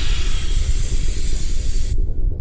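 A loud, steady hiss over a deep rumble, cutting off abruptly at the end.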